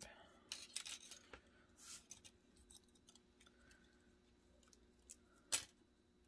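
Die-cut paper number pieces being peeled out of thin metal cutting dies by hand: small paper crackles and light clicks of the dies, fainter handling after about two seconds, and one sharp click near the end.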